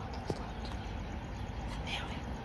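Low, steady rumble of a train approaching in the distance, with one sharp click about a third of a second in.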